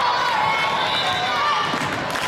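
Many overlapping high voices of girls on the court and spectators calling out and chattering in a gymnasium between rallies.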